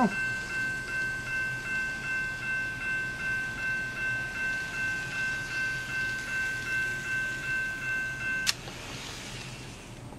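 Electronic American-style grade-crossing bell sound from a Kato N-scale automatic crossing gate, dinging about three times a second while the gates are down. It cuts off suddenly about eight and a half seconds in, once the train has cleared the last sensor and the gates rise.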